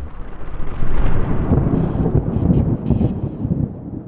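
A logo-intro sound effect: a loud, dense rumbling roar with crackle that swells up in about the first second and then fades away toward the end.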